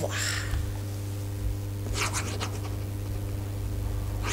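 A pen scratching on paper in a few quick strokes, once at the start and again about halfway through, over a steady low electrical hum.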